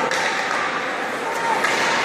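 Ice hockey game in an indoor rink: indistinct voices from the stands and bench over a steady wash of play noise, with a sharp knock about one and a half seconds in.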